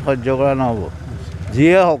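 Speech only: a man talking into reporters' microphones outdoors.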